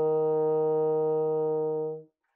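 Bassoon holding one steady E-flat below middle C, played with the long E-flat fingering: left hand plus the right-thumb B-flat key and a right-hand finger, added to steady the note. The note stops cleanly near the end.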